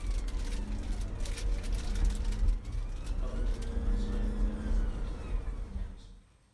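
Steady engine and road rumble inside a moving police van's cabin, with a siren wailing in slow rising and falling sweeps. The sound cuts off suddenly at the end.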